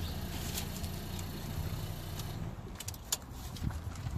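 Steady low hum of a car engine running, with a few faint clicks near the end.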